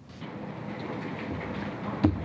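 Steady hiss and room noise of an old broadcast recording of a press conference, growing louder over the first second.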